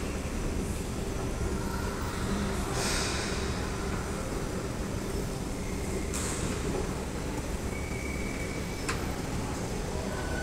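Hyundai S Series escalator running, heard from its moving steps: a steady low rumble, with brief hisses about three and six seconds in and a sharp click near the end.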